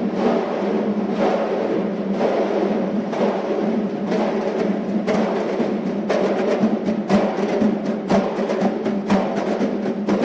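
Armenian dhols, several large double-headed drums, beaten in a steady rhythm, about one strike a second at first, with sharper strikes coming thicker from about halfway.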